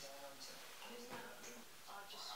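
Faint speech from a television talk show: several voices talking, muffled by the set's speaker.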